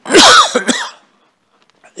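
A man coughing hard: one loud, harsh cough followed by a shorter second one.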